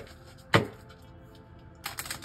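Tarot cards being shuffled by hand: two sharp slaps of the deck, the second about half a second in and the loudest, then a rapid run of card clicks starting near the end. Soft background music plays underneath.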